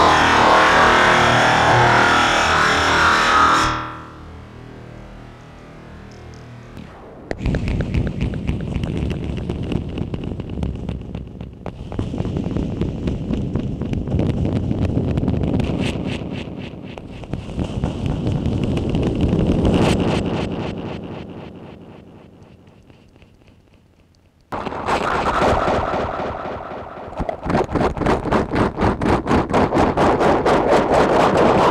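Electro-acoustic noise from a KOMA Field Kit and Field Kit FX: street surfaces (window sill, tiled wall, cobblestones) tapped and scraped through a contact pickup and run through distortion and effects. A loud burst cuts off about four seconds in. Dense scraping textures follow and fade away, then a loud section starts abruptly near the end and settles into about three pulses a second.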